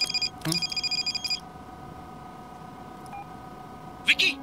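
Mobile phone ringing: an electronic trill of steady high tones in two short bursts that stop about 1.4 seconds in. A steady hum continues underneath.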